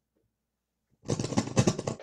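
Loud crackling and buzzing through the guitar amplifier from the guitar's cable jack coming loose, starting about a second in and lasting about a second: the player calls it feedback.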